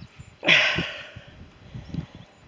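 A person's heavy breathy exhale, like a sigh, about half a second in, fading over about a second, with faint low thumps around it.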